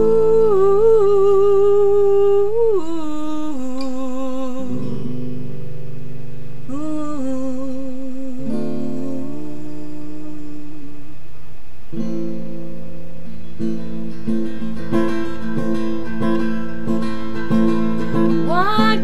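Music: a song intro with a wordless, wavering sung line over long held chords, then acoustic guitar strumming that comes in about twelve seconds in.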